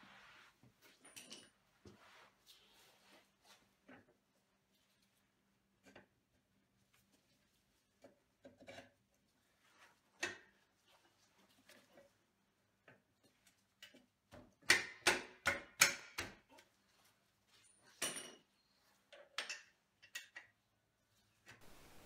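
Sparse metallic clicks and knocks of a motorcycle rear wheel axle being worked back through the swingarm and wheel hub, with a quick run of about six louder knocks past the middle and a few lighter taps after.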